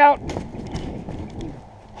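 Quick footsteps running on grass, an uneven patter of soft thuds and rustling, with the handheld camera jostling. It dies down about a second and a half in.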